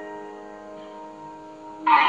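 Karaoke backing track intro: held chord notes slowly fading, then just before the end a sudden loud entrance of the full band with strummed guitar.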